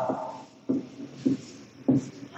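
A man's voice trailing off at the end of a word, then three brief, low murmurs from him about half a second apart.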